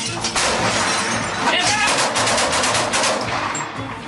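Rapid volleys of sharp bangs and shattering, typical of gunfire and breaking glass during a storming assault, with background music underneath and a brief shout near the middle.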